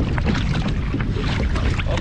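Kayak being paddled through choppy water: paddle blades dipping and splashing, and small waves slapping the hull, with steady wind noise on the microphone.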